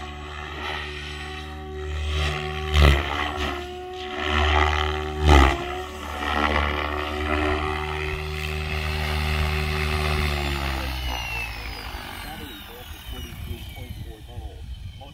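Electric Raw 700 RC helicopter in flight: a steady rotor hum with two loud whooshing peaks about three and five seconds in. Past the ten-second mark the rotor note fades and a high whine slides steadily downward as the helicopter lands and its rotor spools down.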